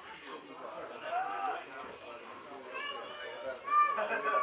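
Indistinct chatter of several people talking in the background, with a few louder voices near the end.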